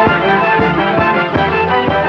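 Film score music with a steady beat of about two strokes a second under a melody.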